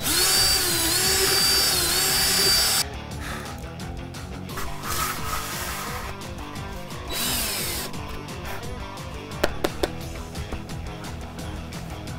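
DeWalt cordless drill running under load as its bit bores through a foam craft pumpkin for about three seconds, its high motor whine dipping and recovering, then stopping abruptly.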